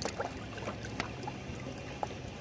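Small lake waves lapping against a shoreline rock, with several short, sharp splashes over a steady wash of water. A steady low hum runs underneath.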